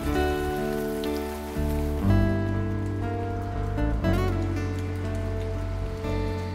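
Rain falling, heard over a film score of held notes whose chords change every second or two.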